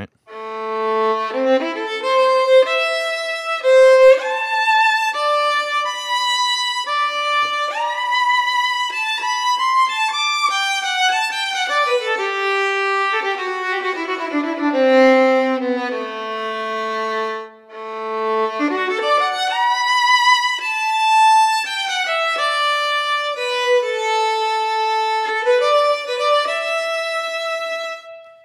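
Sampled solo violin from the CineStrings Solo library's Violin 1 patch, played live from a MIDI keyboard: a slow, connected melody with vibrato, the notes sliding into one another. The line sinks to the instrument's low register in the middle, with a brief break a little after halfway.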